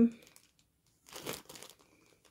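Clear plastic zip-top bag crinkling briefly as it is handled, about a second in, with a fainter rustle just after.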